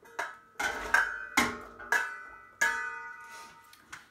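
Stainless steel pot lid and cookware knocking together in a string of sharp metal clanks, each one ringing on briefly with a clear tone.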